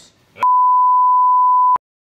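Censor bleep: a single steady pure beep at about 1 kHz, lasting just over a second, switched on and off abruptly, with dead silence on either side.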